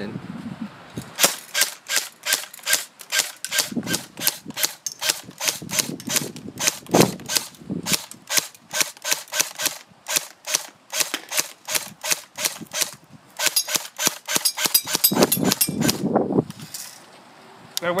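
AK-pattern airsoft electric rifle firing on semi-auto: a steady string of sharp shots about three a second, then a quicker run of shots near the end. The firing stops when the wind-up drum magazine runs out.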